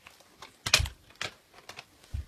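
Hard plastic DVD cases being handled: about five irregular sharp clicks and clacks, the loudest just before a second in.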